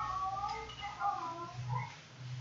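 Faint, wavering voice-like calls that glide up and down in pitch, over a steady low hum.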